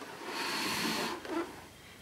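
Plastic body and wheels of a Bosch Perfecta cylinder vacuum cleaner rubbing over carpet as it is turned round by hand: a brief hissy scrape lasting about a second, then quieter.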